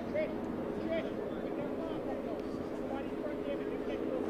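A steady low hum made of several even tones, with faint distant voices over it.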